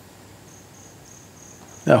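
A cricket chirping faintly: a steady, high pulse repeating about three times a second. A man's voice begins near the end.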